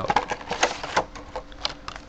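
Clear plastic packaging crinkling and a thin, clear hard plastic phone case clicking as they are handled and pulled apart, a quick irregular run of small clicks and crackles.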